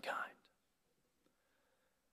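A man's spoken word trailing off breathily in the first moment, then near silence: room tone through a pause in speech.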